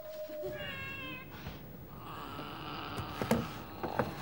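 A cat meowing. A long drawn-out meow fades out and a second, higher meow follows about half a second in. Then comes a steadier, rougher cry, with a couple of sharp clicks near the end.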